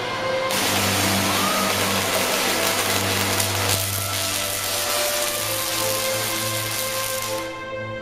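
Large Tesla coil firing: a loud, harsh buzzing spark discharge arcing from the top load to a suspended metal ball. It starts abruptly about half a second in and cuts off sharply about half a second before the end, over a steady low hum.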